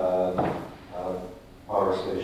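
Speech: a voice talking, with a short pause a little past the middle.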